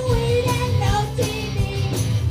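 Live rock band playing: a woman singing the lead vocal over electric guitars and a drum kit with a steady beat.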